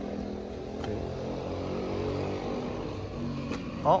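An engine running steadily in the background, a low even hum with no revving. There are a couple of faint clicks, and a short spoken exclamation right at the end.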